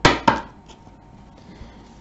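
A tarot card deck being picked up and handled, with two sharp clacks close together at the start.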